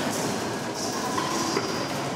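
Coins dropped one after another into a row of metal alms bowls: a quick, uneven run of small metallic clinks and brief rings over steady background noise.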